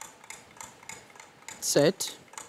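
Steady ticking of a game-show countdown-clock sound effect as the timer runs. A short spoken word comes near the end.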